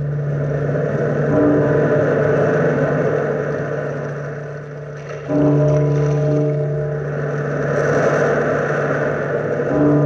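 A deep bell tolling slowly, struck again about five seconds in and once more near the end, each stroke ringing on, over the rise and fall of surf washing on a shore.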